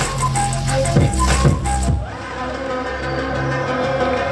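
Battle music over the sound system: a drum beat with bass that drops out about halfway through, leaving only held tones.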